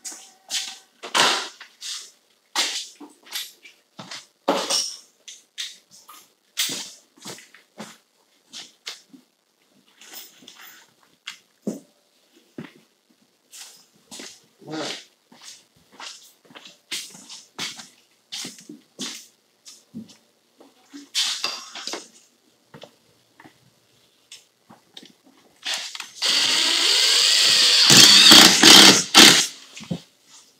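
Cordless screw gun driving a screw through the metal L-angle wall molding into the wall, a loud run of about three and a half seconds near the end. Before it come scattered clicks and knocks.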